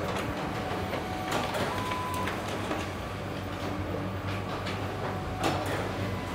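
Office printer of an Espresso Book Machine printing the pages of a book block: a steady motor hum with scattered clicks of the paper feed, a brief high tone about two seconds in, and a louder click near the end.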